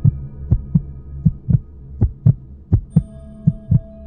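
Heartbeat sound effect: a steady double beat of low thumps, six beats about three-quarters of a second apart, over a low steady hum.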